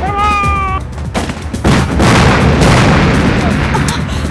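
A short, high shout ordering the guns to fire, then a dense din of battle sound effects: booms of cannon fire mixed with gunshots.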